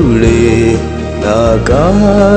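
Music from a Telugu Christian devotional song (keerthana): a sung melody that is held and then slides in pitch, over steady instrumental accompaniment.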